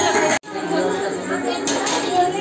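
Music cuts off abruptly less than half a second in, and several people's voices chattering in a large room follow.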